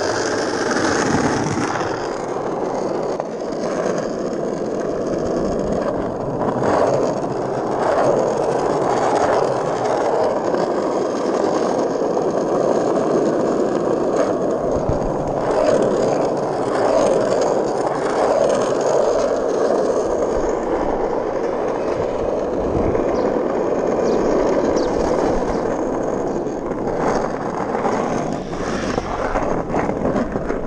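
Skateboard wheels rolling over asphalt: a steady, gritty rumble with a few short knocks over bumps in the road.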